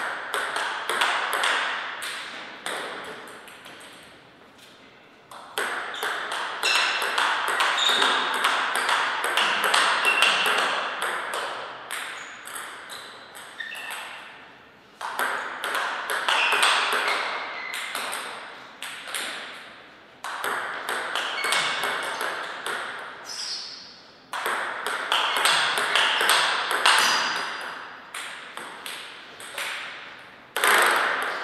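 Table tennis rallies: the celluloid-type ball clicking off the rackets and the table in quick back-and-forth succession. Five rallies come one after another, each a run of rapid clicks separated by brief pauses.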